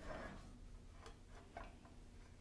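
Faint, scattered light clicks and knocks from a metal standing-desk leg column being handled and stood upright on the laminate desktop.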